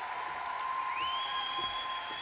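Audience applauding. A steady high tone rings through the clapping, and a second, higher tone slides up about a second in and holds.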